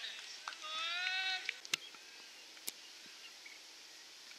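A person's long drawn-out shout, held for about a second with a slight rise in pitch, followed by two sharp knocks about a second apart.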